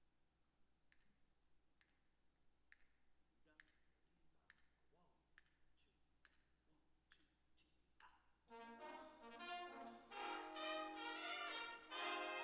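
Faint, evenly spaced clicks just under a second apart count off the tempo, then a high school jazz big band comes in about eight and a half seconds in, its brass section playing full chords.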